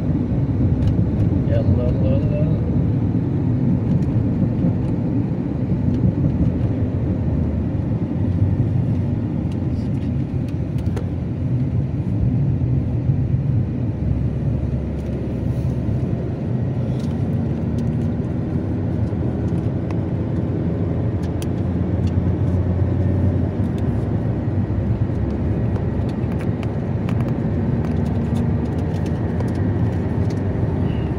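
Steady low rumble of a car's engine and tyres heard from inside the cabin while cruising at highway speed.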